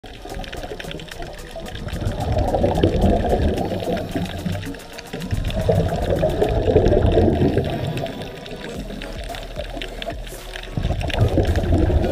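Underwater bubbling and rumble of a scuba diver's exhaled breath venting from the regulator, swelling in surges a few seconds apart, heard through a camera underwater.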